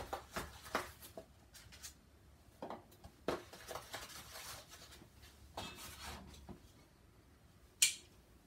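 Eggs and an egg carton being handled on a kitchen counter: soft scattered clicks and taps as the carton is opened and eggs are set down, with one sharper knock near the end.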